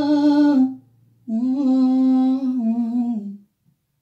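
A woman's voice singing the wordless closing notes of a slow ballad into a microphone: one held note that breaks off early, then a second long note with a slight waver that fades out, followed by silence. A low steady note from the backing track sounds under the first and stops about a second in.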